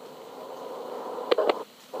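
Background noise of a microcassette recording between sentences of speech: steady hiss with a faint hum, and two brief sharp sounds about a second and a half in.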